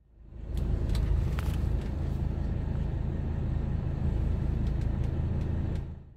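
Mercedes W126 300SD's five-cylinder turbodiesel engine idling steadily, a low even rumble with a few faint ticks on top.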